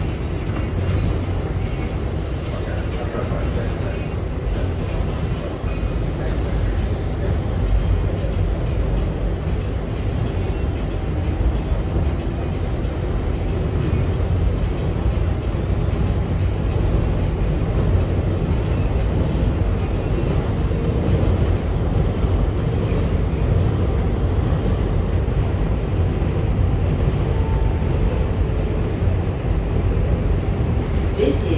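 Inside a moving R188 New York subway car: a steady rumble of wheels on rail and running gear. It grows a little louder after about six seconds and then holds.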